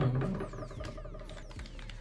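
Rapid plastic clicking and rattling from a pair of Beats Studio Wireless headphones being handled and folded.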